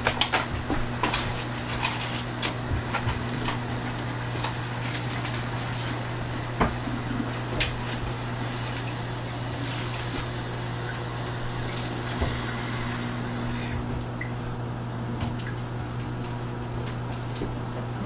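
Kitchen tap running into a cup-noodle container for about five seconds in the middle, after a few seconds of light clicks and rustles from handling the cup and seasoning packet. A steady low hum runs underneath.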